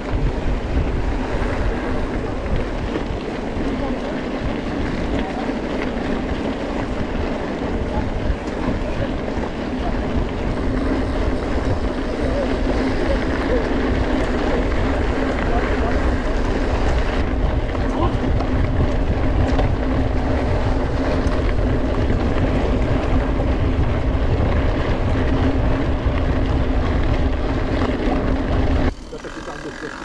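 Mountain bike rolling fast along a dirt track: wind rushing over the action camera's microphone with tyre rumble, and a steady low hum running through it. It cuts off suddenly about a second before the end.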